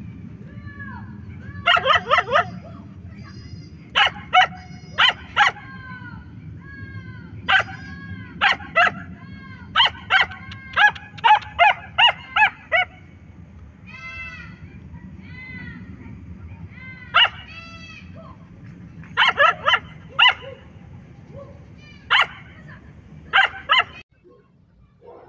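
A husky barking in short, high yips, mostly in quick runs of two to five, with a few longer drawn-out calls between them. A steady low hum runs underneath.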